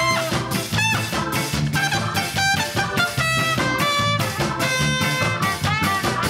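A live ska-jazz band playing: saxophones, electric guitar, bass, keyboard and drum kit in a steady, evenly pulsing groove, with held horn notes.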